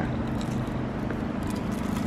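A steady low mechanical hum with faint droning tones, with a few faint crinkles of aluminium foil being unwrapped about one and a half seconds in.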